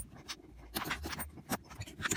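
Irregular light metallic clicks and scraping as pliers pry coins out from between the coils of a stretched steel tension spring.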